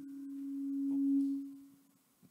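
Microphone feedback through the PA system: a single steady low tone that swells, peaks a little past the middle, then fades away near the end.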